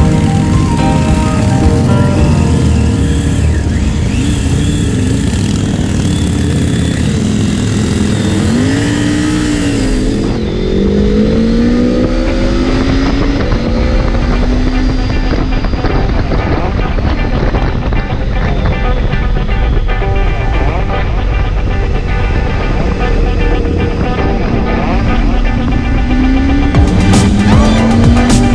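Motorcycle engine running under way, with several rising runs in pitch near the middle as it accelerates, mixed with background music.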